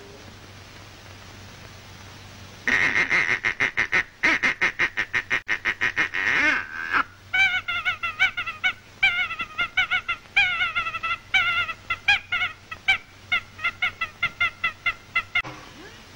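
Cartoon character's laughter on an early-sound-film soundtrack: a long string of short pitched laughing bursts, several a second, each bending in pitch. It is preceded, about three seconds in, by a fast sputtering run of short rasping pulses.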